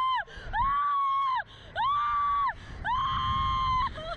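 A rider on a reverse-bungee slingshot ride screaming in fright: long, high, held screams, three in a row after the tail of one at the start, with short breaks for breath between.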